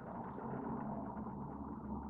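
Faint steady low hum and hiss: background room tone, with no distinct events.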